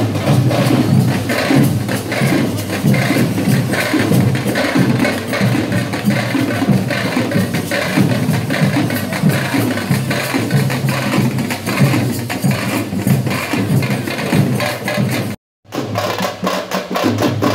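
Dollu kunitha troupe beating large barrel drums with sticks in a dense, steady beat. The sound cuts out for a split second near the end.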